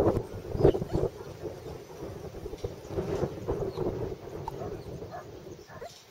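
Wind buffeting the camcorder microphone in an irregular rumble, loudest in the first second and easing off toward the end, with faint indistinct sounds from the arena behind it.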